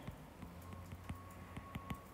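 Faint, irregular light taps and clicks of a stylus writing on a tablet screen, over a low steady hum.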